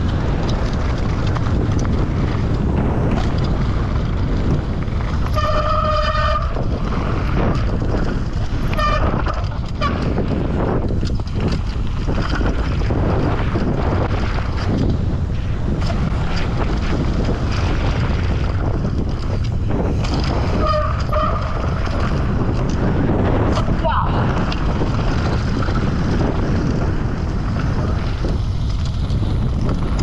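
Wind buffeting the microphone of a bike-mounted action camera, mixed with a downhill mountain bike's tyres and frame rattling over a rocky dirt trail, loud and steady throughout. Short pitched tones break through about five seconds in, near nine seconds and again around twenty-one seconds.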